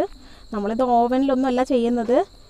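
A woman speaking from about half a second in, over a steady high-pitched tone.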